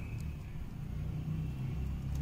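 A low background rumble, growing slightly louder, of the kind a vehicle running nearby makes.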